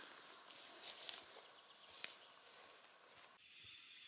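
Near silence: faint outdoor hiss with a few soft rustles and a single click about halfway through.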